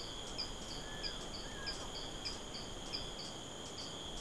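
Soft forest insect chorus, cricket-like: a steady high-pitched drone with a short high chirp repeating about three times a second.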